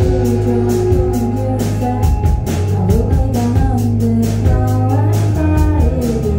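Indie rock band playing live: drum kit keeping a steady beat under bass and guitars, with a melodic line sliding up and down in pitch.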